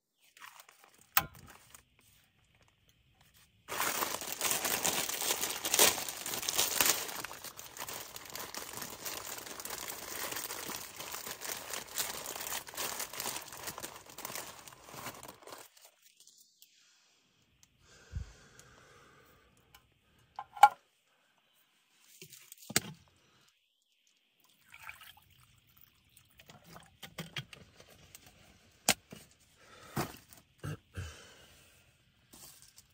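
A plastic instant-noodle packet crinkling and tearing for about twelve seconds, followed by a few scattered clicks and rustles.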